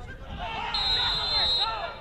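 Referee's pea whistle blown once in a steady high blast of just under a second, starting about midway, to stop play for a foul. Players' shouting voices run around it.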